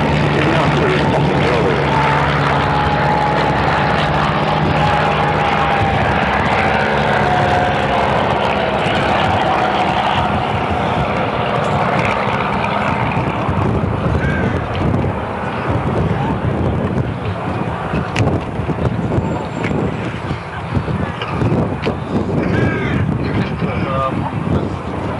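Auster T.7 light aircraft's single piston engine droning as it flies past, its pitch sliding slightly lower as it goes by. After about ten seconds it fades into a rougher, uneven sound as the aircraft banks and climbs away.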